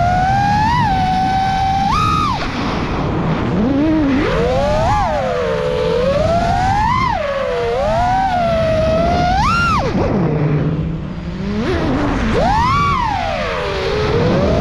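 FPV racing quadcopter's Xing E Pro 2207 2750 kV brushless motors spinning 4934 S-Bang props, whining in surges that rise and fall in pitch with the throttle, with a drop to a low hum around ten seconds in and a sharp climb soon after. A steady rush of air runs underneath.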